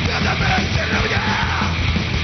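Hardcore punk band playing live, with a vocalist yelling over the full band.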